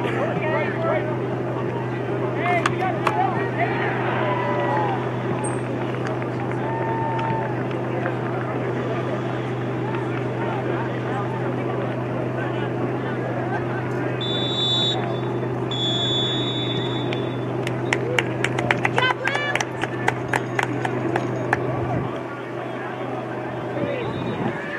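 Distant shouting of players and coaches across a soccer field over a steady low hum. About halfway through, a referee's whistle sounds twice, a short blast then a longer one, followed by a quick run of sharp clicks.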